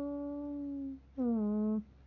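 A woman singing a Dao pả dung folk song unaccompanied. She holds one long note that sinks slightly and stops about a second in, then sings a short note that falls in pitch.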